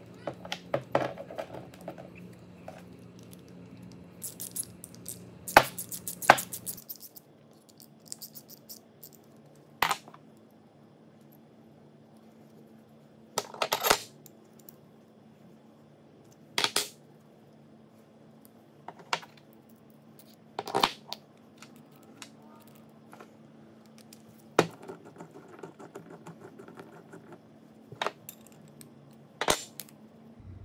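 Small steel parts and hand tools clinking and knocking on a workbench as a bolt, washers and a steel block are put together and tightened with a wrench. The knocks are irregular and sharp, some in quick clusters, others single and a few seconds apart.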